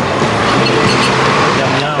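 Street noise with a vehicle passing, a dense rushing noise that swells in the middle, under the talk of people nearby.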